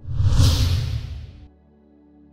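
A whoosh sound effect with a deep rumble under a hissing sweep, starting abruptly and dying away after about a second and a half, over soft background music.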